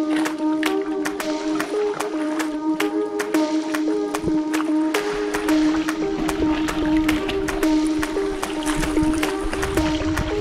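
Background music with a steady beat, a held low note and a short repeating melody.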